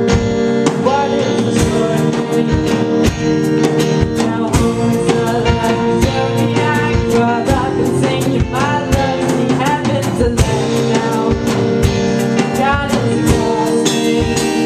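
Live rock band playing: a drum kit keeps a steady beat under electric guitar, bass guitar and strummed acoustic guitar, with a singer's voice through the PA at times.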